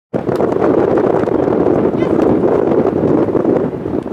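Wind noise on the microphone, steady throughout, with players' voices calling across the pitch.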